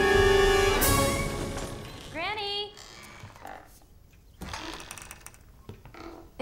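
Film soundtrack: orchestral score with sustained chords that die away over the first two seconds. About two seconds in comes a brief voice call that rises and falls in pitch, then a quieter stretch with a few faint knocks and rustles.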